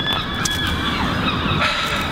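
Steady outdoor background noise with a few faint calls over it.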